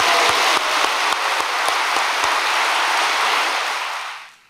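A large audience applauding with steady, dense clapping that fades out near the end.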